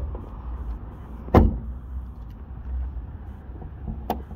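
A single sharp thump about a second and a half in, over a steady low rumble.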